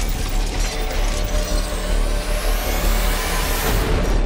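Cinematic logo-intro sound design over music: a heavy low rumble with mechanical clicking, and a whoosh that rises steeply in pitch over the last two seconds.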